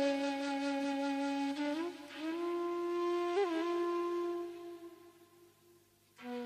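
Instrumental interlude of a ghazal: a flute plays a slow melody of long held notes with a brief ornament a little past the middle, then fades away near the end.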